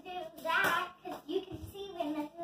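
A young girl's voice in short, sing-song sounds without clear words while she spins a hula hoop, with a few soft knocks about a second and a half in.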